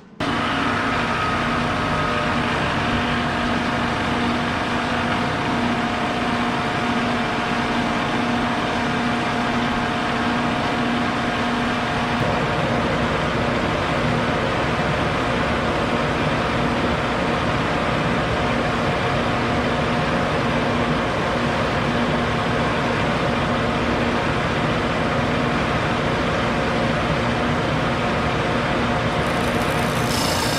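Shopsmith Mark V 520's motor running its sanding disc at a reduced speed of about 1,300 rpm, a loud, steady hum with the rush of a southern yellow pine round being sanded round against the disc.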